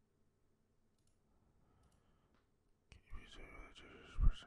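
Near silence with a few faint clicks, then about three seconds in a sharp click followed by a person's low, breathy voice sound.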